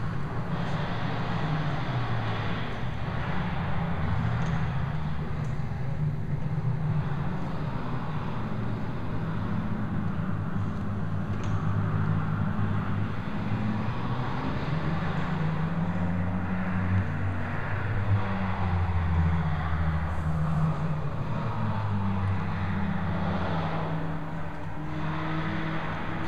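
A steady low mechanical rumble whose pitch drifts slowly up and down.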